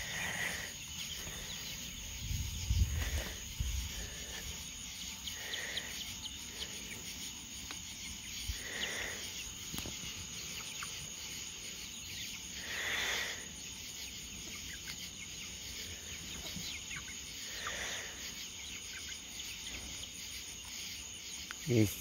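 Steady high trill of crickets, with soft, short calls from poultry in the pen every few seconds. A few low bumps come about two to four seconds in.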